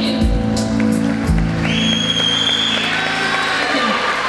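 Acoustic guitar strumming a final chord that rings and fades away, as audience applause starts about a second and a half in, with a high whistle-like tone over the clapping.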